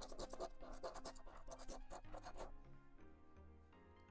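A coin scraping the coating off a scratch-off lottery ticket in rapid back-and-forth strokes, which stop about two and a half seconds in. Soft background music plays underneath.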